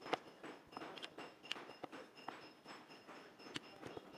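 A rolling pin flattening a slice of crustless white bread on a wooden board: soft rolling with scattered light knocks and clicks, the sharpest just at the start.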